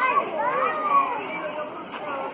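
Several voices, children's among them, talking and calling over one another in a lively babble.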